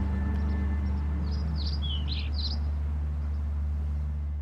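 A quick run of about five short, high bird chirps about a second in, over a steady low hum.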